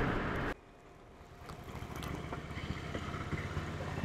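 Low steady road noise inside a moving taxi that cuts off abruptly about half a second in; after a moment of near silence a faint, steady low outdoor background rumble fades up and holds.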